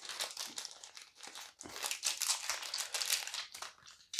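Thin clear plastic baggie crinkling in the fingers as it is worked open to get the dice out, an irregular run of crackles.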